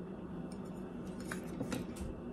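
Handling noise from small items being set down and sorted through. A metal pin-back button is laid aside and hands rummage in the box, giving a few soft clicks and light rustles.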